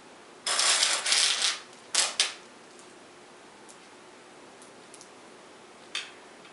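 Jelly beans rattling and clicking as they are handled on a glass cake plate and in a bowl: a rattling stretch from about half a second to a second and a half in, then two sharp clatters about two seconds in, followed by only a few faint clicks.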